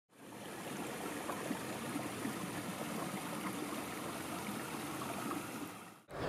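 A steady, even rushing noise, like running water, that fades in just after the start and fades out at the end.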